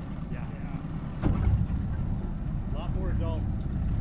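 A boat's motor running with a low, steady rumble as the boat moves on the river, growing louder about a second in.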